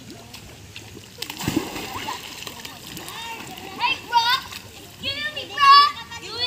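Water splashing in a swimming pool with children's high-pitched shouts: a splash about a second and a half in, then two bouts of shouting, the louder one near the end.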